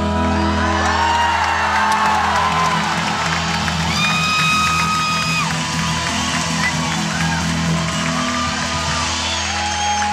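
A live band holds its closing chord on acoustic guitar, drums and keys while a large crowd cheers and whoops over it, with one long high whoop about four seconds in.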